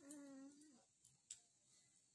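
A baby's short single coo or whine, under a second long at the start, steady in pitch with a slight rise and fall. A faint click follows about a second later.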